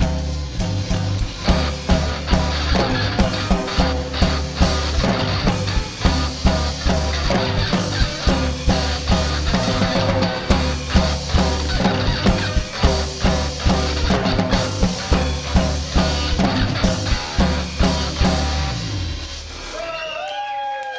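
Live band playing an instrumental passage: electric guitar, electric bass and drum kit with a steady driving beat of about two drum strokes a second. The bass and drums stop shortly before the end as the song finishes.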